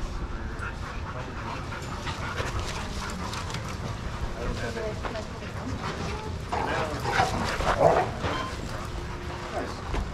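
A group of playing dogs vocalising, with barks and yips, plus a louder cluster of calls a little over halfway through.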